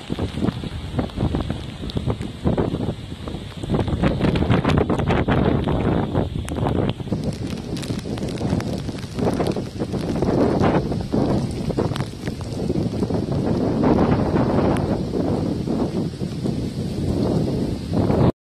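Strong, gusty cyclone wind buffeting the microphone, a loud rumbling noise that surges and drops irregularly.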